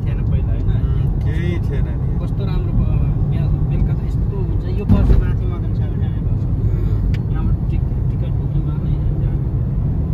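Steady low rumble of a moving car heard from inside the cabin, engine and tyre noise on the road, with one louder thump about five seconds in. Faint voices sound over it.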